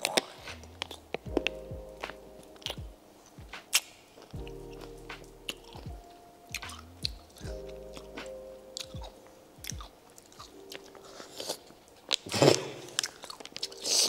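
Close-up biting and chewing of a whole pickle coated in chamoy: wet, squishy chewing broken by sharp clicks and crunches as the skin gives, with a louder rustle near the end. Faint background music with held chords plays underneath.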